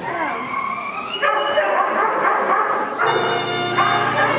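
A dog barking and yelping excitedly, in short calls that rise in pitch. About three seconds in, music starts.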